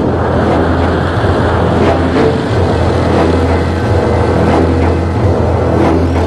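Loud, steady rush of air on a helmet camera during a wingsuit BASE jump in flight, mixed with music.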